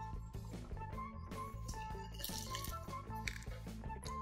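Soft instrumental background music, with a few light clinks of kitchen utensils.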